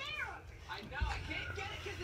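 High-pitched, wordless child vocal sounds that rise and fall, with more voices later and a low bump about a second in.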